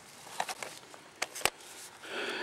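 Toothbrush scrubbing dirt off a small dug relic button: a soft, scratchy hiss with a few sharp clicks, the loudest about one and a half seconds in.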